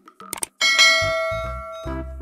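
Two quick clicks, then a bright bell chime that strikes suddenly and rings out slowly fading: the click-and-ding sound effect of a subscribe-and-notification-bell animation. Background music with a pulsing bass comes in about a second in.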